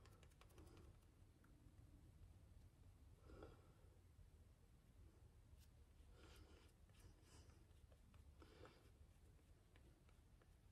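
Near silence: room tone with a low hum and a few faint, soft rustles.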